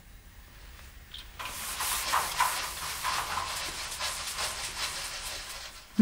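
A steady, loud hiss of vapor venting from lab equipment starts about a second and a half in and holds.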